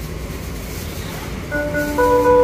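Steady low rumble of store background noise, then about one and a half seconds in an electronic alarm starts, several held tones at different pitches: the exit's anti-theft sensors going off at the boxed laptops in the cart.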